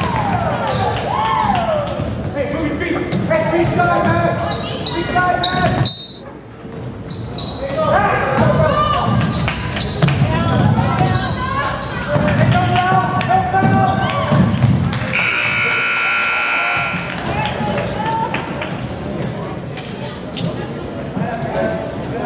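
Basketball bouncing and sneakers squeaking on a gym floor among shouting players and spectators' voices, echoing in the hall. About two-thirds of the way in, a scoreboard horn sounds steadily for about two seconds, the game-ending horn.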